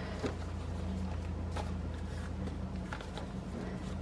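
Faint handling of paper and card as journal pages are placed and turned, with a few soft taps and clicks, over a steady low hum.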